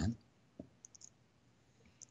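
A man's voice trails off, then a pause in which a few faint short clicks sound about half a second to a second in.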